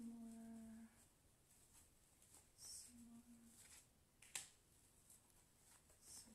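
Faint shuffling of a tarot deck in the hands: a few soft flicks of card edges, with one sharp snap of a card about four and a half seconds in. A short hummed 'mm' at the start and another about three seconds in.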